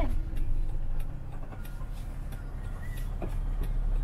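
Steady low road and engine rumble heard inside the cabin of a Winnebago Revel 4x4 camper van (Mercedes Sprinter) while it drives along.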